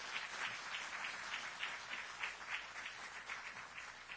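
Audience applauding: many people clapping steadily together, thinning slightly near the end.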